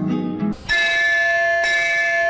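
Film-song music: a brief low note, then a bell-like chime struck about two-thirds of a second in that rings on steadily.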